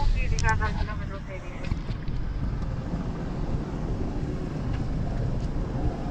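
Wind and road noise of a moving car with its rear window open, a steady low rumble with wind buffeting the microphone. A voice is heard briefly in the first second.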